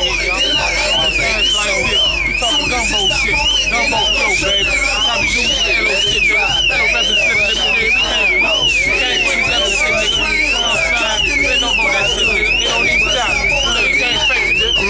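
An electronic alarm sounding continuously: a high tone sweeping up and down about twice a second, over many voices talking.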